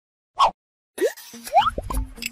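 Cartoon-style pop sound effects from an animated intro: a single short pop, then a quick run of upward-sweeping bloops about a second in, with a low rumble under the last of them.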